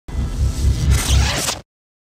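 Intro sound-effect sting for a logo reveal: a rushing noise over a deep low rumble that swells and cuts off suddenly about a second and a half in.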